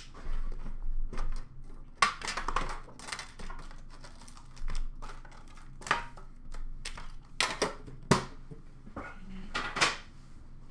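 A metal hockey-card tin being opened by hand and its foil card packs lifted out of the plastic tray and set down on a glass counter: irregular clicks, taps and rustling, with sharp clicks about two seconds in and again near eight seconds.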